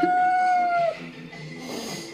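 Persian cat giving one long yowl that rises in pitch at the start, holds steady for about a second, then breaks off.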